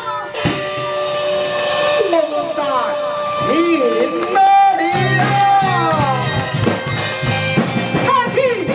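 Taiwanese opera (gezaixi) stage music: accompaniment with long held notes, joined by a voice singing in gliding, wavering lines from about two seconds in.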